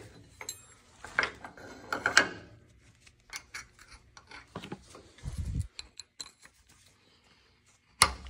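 Steel hitch pin and its washers clinking and scraping as they are handled and pushed through the tractor hitch: a run of irregular metallic clicks and rattles, with a dull thump about five seconds in.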